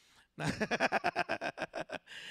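A man laughing, starting about half a second in: a quick, even run of chuckles.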